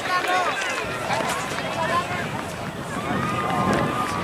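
Several voices of youth soccer players and sideline spectators shouting and calling out at once across an outdoor field, with a long steady high tone near the end.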